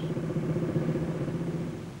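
A motorcycle engine running steadily, a low even hum with a fine rapid pulse, fading slightly toward the end.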